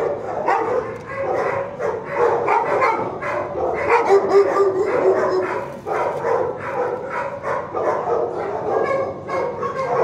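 Dogs in shelter kennels barking continuously, many barks overlapping with no break, with a held whining tone about four seconds in.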